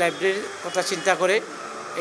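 A man talking in Bengali, in two short phrases with a brief pause between.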